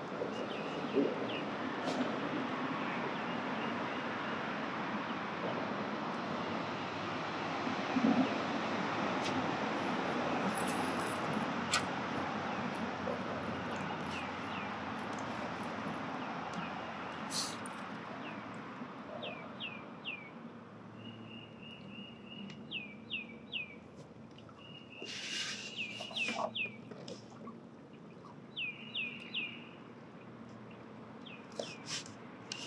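A steady rushing background noise that fades through the first half, then a small bird chirping repeatedly in short falling notes, with a few brief held notes in between.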